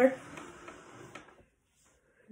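A half-gallon glass jar of milk being slid and shifted on a table, a faint scraping and handling sound that stops with a small knock just over a second in.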